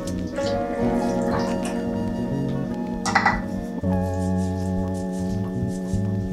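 Background music of sustained chords that change about every three seconds, over the splashing of chicken broth poured from a carton into a pot of kale.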